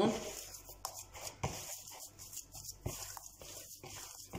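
Hands kneading a soft, damp cornmeal dough in a bowl: irregular soft squishes, pats and small knocks as the dough is pressed and folded.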